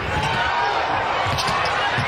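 Basketball bouncing on a hardwood court during live play, over the steady noise of an arena crowd.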